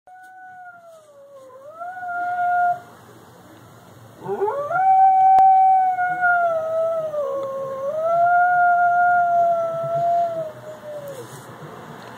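A dog howling in response to sirens: a short howl, a brief pause, then a longer howl that rises, holds, dips and rises again before trailing off.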